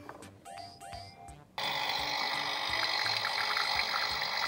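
Toy espresso machine playing its brewing sound effect: a steady hissing, pouring noise that comes on suddenly about a second and a half in.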